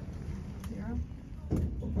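People's voices talking in the background over a low, steady rumble of room noise, with a louder stretch of speech near the end.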